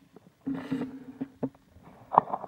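A man's brief held hesitation sound, a drawn-out 'mmm' lasting about half a second. It is followed by a couple of light clicks as the alligator-clip test leads are handled.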